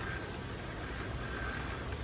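Canon PIXMA iP2870 inkjet printer running its start-up check: a steady low hum with a faint thin whine that comes and goes.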